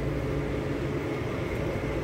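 Steady low mechanical drone, an even hum with no distinct events.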